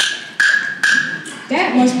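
A knock at the door: three quick, evenly spaced sharp strikes, each with a brief ringing tone at one pitch, like a wood block. It signals a visitor arriving.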